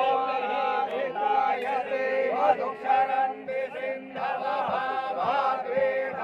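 Several voices chanting mantras together in a steady, continuous recitation during the abhishek (ritual bathing) of a Shiva linga.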